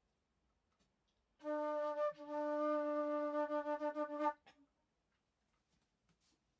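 Alto flute playing a single low note, held for about three seconds with one short break, then re-tongued several times in quick succession before it stops.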